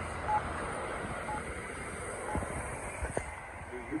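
Accessible pedestrian signal push-button unit sounding its locator tone: a short beep about once a second, four times, over traffic noise. The unit's recorded voice begins a street-name message at the very end.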